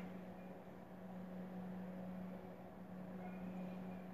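Quiet background with a faint, steady low hum and no hammer taps to be heard.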